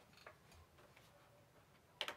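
Near silence: room tone with a few faint clicks in the first second.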